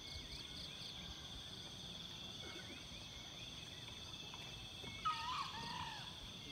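Steady high-pitched drone of insects, with a fast pulsing chirp above it early on and faint bird chirps. A louder, short, warbling call comes about five seconds in.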